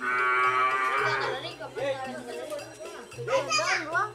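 A Madura racing bull lowing loudly once, a drawn-out moo of about a second, then a few brief, sharply rising and falling calls about three seconds in.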